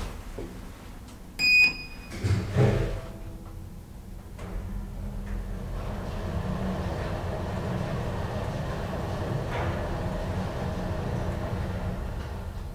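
Inside a Deve-Schindler traction elevator car: a short electronic beep about a second and a half in, then a soft thud as the car doors close. After that comes a steady low hum and rumble as the car travels.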